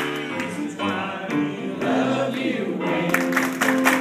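Yamaha CP electric stage piano playing a song accompaniment with held chords, and voices singing along over it.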